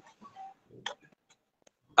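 A pause between speech with a few faint, short clicks scattered through it.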